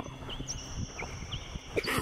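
Birds calling: several short, high chirps that dip in pitch, over steady high tones, with a brief, louder harsh rasp near the end.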